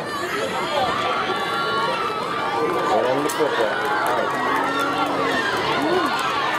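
Football crowd in the stands shouting and cheering, many voices overlapping at once.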